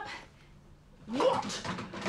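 A person's brief wordless vocal sound, rising in pitch, that starts about a second in after a near-quiet moment.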